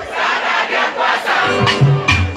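A large concert crowd shouting and singing along while the song's beat drops out, leaving mostly massed voices. The bass of the live music comes back in near the end.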